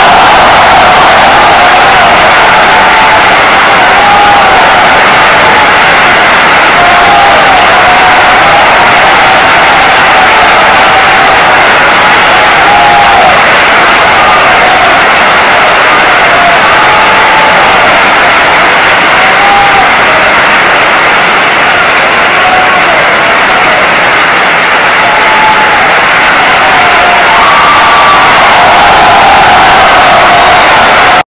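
Audience ovation: loud, steady applause and cheering, with single voices calling out above it.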